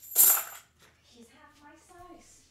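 Metal coins clinking together in a bright, ringing jingle for about half a second, followed by a faint wavering whine near the end.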